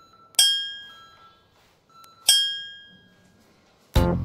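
Two bright, bell-like chime dings about two seconds apart, each struck sharply and ringing out as it fades, with faint short beeps between them: an interval-timer signal marking the end of one exercise and the change to the next.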